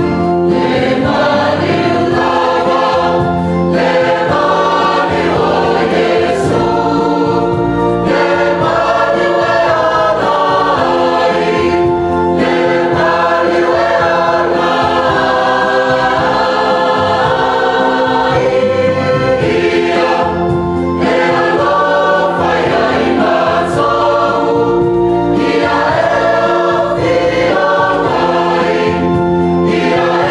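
Church choir singing a hymn, many voices in harmony on long, held chords that change every second or so.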